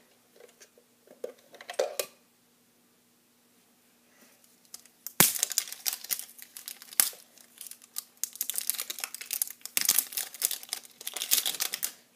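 Plastic packaging crinkling and rustling as it is handled and pulled open, starting with a sharp click about five seconds in and with another click about two seconds later. Before that there are only a few faint handling sounds and a short stretch of near quiet.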